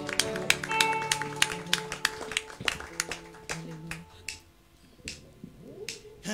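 A congregation clapping, scattered hand claps over held instrumental chords, dying away after about four seconds; near the end the band starts up again.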